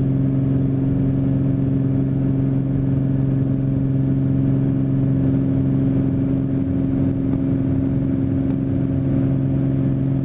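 Single-engine piston airplane's engine and propeller at full takeoff power, heard from inside the cockpit as a loud, steady drone through the takeoff roll and liftoff.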